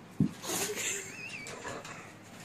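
A pug sneezing: a sharp burst about a fifth of a second in as its head snaps toward the floor, followed by a short noisy snort.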